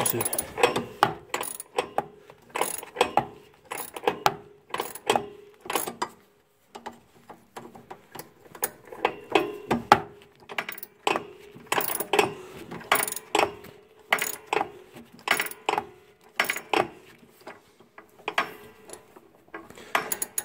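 Hand ratchet clicking in repeated back-and-forth strokes, with small metal tool clinks, as a loosened nut on a car's rear anti-roll bar link is run off. The clicking stops briefly about six seconds in.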